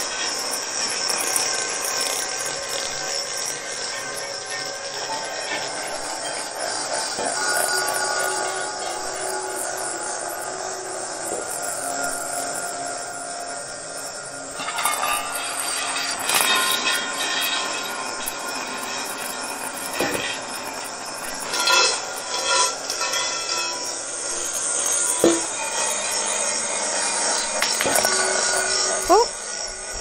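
Marbles rolling and swirling around inside several stainless-steel salad bowls of different sizes, giving a continuous rolling whir while the bowls ring in several held tones at once. Occasional sharper clinks come as marbles knock against the metal.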